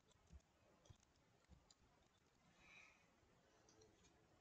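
Near silence with a few faint, irregular clicks of a computer keyboard being typed on.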